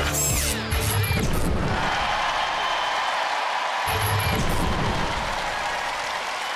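Television show music: a short sweeping sting at the start, then a studio audience cheering over the music, with a low musical hit about four seconds in.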